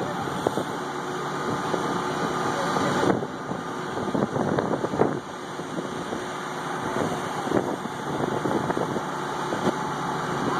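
John Deere backhoe loader's diesel engine idling steadily.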